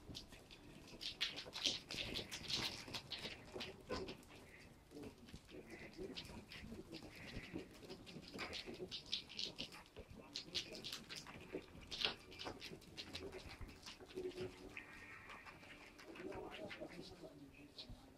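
Ferrets moving and playing inside a play tube: an irregular run of short clicks and scratches, with a few short animal noises mixed in.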